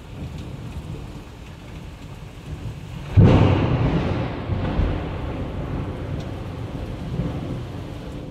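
Steady rain with a sudden loud thunderclap about three seconds in, rumbling away over the next few seconds.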